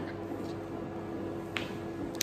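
A steady low hum with a few small clicks, the clearest about one and a half seconds in.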